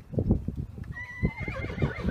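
A horse whinnying: a wavering high call that starts about a second in and lasts about a second, over repeated low thuds.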